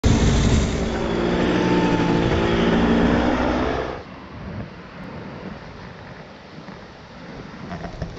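Paramotor's engine and propeller droning overhead at a steady pitch, cutting off abruptly about halfway through. After that comes a soft, even wash of surf breaking on the beach.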